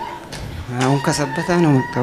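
A man's voice over a microphone and PA making a few drawn-out, strained vocal sounds that fall in pitch, starting a little under a second in, with a faint steady high tone underneath.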